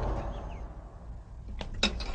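The fading tail of a dramatic music sting, a low rumbling swell dying away over about a second. A couple of faint knocks follow near the end.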